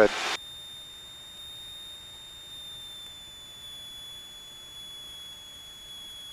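Steady, faint high-pitched whine over a low hiss in a light aircraft's cockpit audio, with no distinct engine sound; the tail of a spoken word ends in the first moment.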